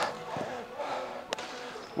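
A dropped football hitting artificial turf: one sharp tap a little over a second in, over faint background music.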